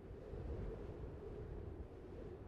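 Faint, steady low rumble of wind noise, with no distinct events.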